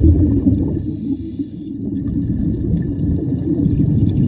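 Underwater sound of scuba breathing through a regulator: a low bubbling rumble of exhaled air, broken about a second in by a short hiss of an inhalation, then the bubbling rumble again.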